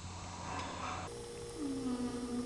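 A person's voice humming a low, drawn-out note that slides slightly down in pitch, starting about a second and a half in, over a steady hum.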